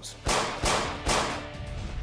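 Three gunshots laid in as a dramatizing sound effect, roughly half a second apart, each trailing off, with a faint steady music tone under them near the end.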